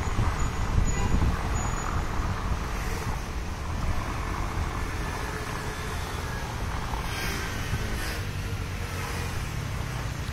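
Steady rumbling outdoor background noise, heaviest in the low end, with two brief hissing swells near the end.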